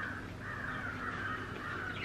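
Birds calling in the background, a continuous wavering chatter of caw-like calls, over a low steady hum.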